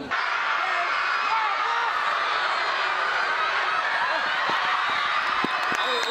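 Crowd of many voices talking and calling out at once, a steady din with no single voice standing out.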